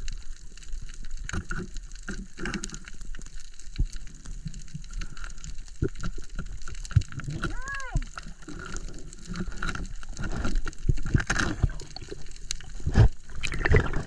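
Underwater sound picked up by a diver's camera over a reef: many irregular sharp clicks and knocks over a steady water noise, with a brief squeak that rises and falls about halfway through and a louder knock near the end.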